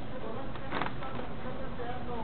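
Steady background noise of a fast-food restaurant, with a short buzzing rasp just under a second in.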